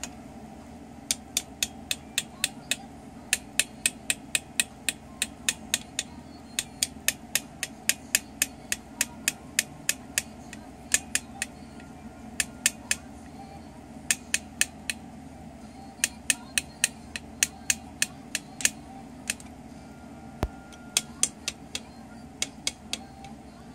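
Sharp plastic taps from a red Black & Decker toy drill, coming in runs of about three a second, broken by short pauses.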